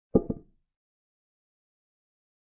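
Chess move sound effect for a capture: two quick wooden clacks close together, dying away fast.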